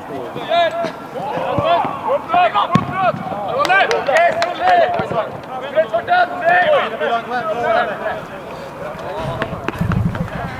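Footballers' shouts and calls carrying across an open pitch, short and overlapping, with a few sharp knocks of the ball being kicked in between.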